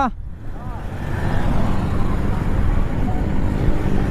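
Sport motorcycle's engine running while riding, with wind noise, as a low steady rumble that grows louder over the first second.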